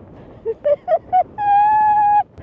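A woman whimpering in distress: four short, high-pitched cries, then one long held wail near the end.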